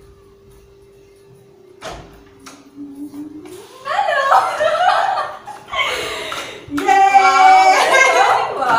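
A door latch clicks about two seconds in as a wooden front door is unlatched and opened, followed by loud, excited voices of women greeting each other, with laughter.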